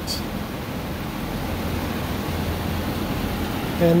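A steady low mechanical hum under an even background noise, with no clear start or stop.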